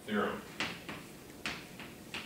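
Chalk tapping and scratching on a blackboard in short, sharp strokes, four or so across two seconds, after a brief voiced sound at the very start.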